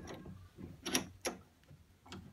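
Bench vise being tightened by its handle onto a sprocket's teeth, giving a few short metallic clicks around the middle.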